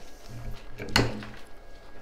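A single sharp click about a second in, over faint handling noise as silk hydrangea stems are worked into an arrangement.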